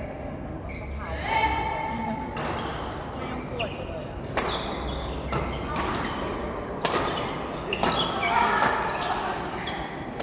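Badminton rackets striking a shuttlecock during a doubles rally: a string of sharp cracks, roughly one a second, ringing in a large hall.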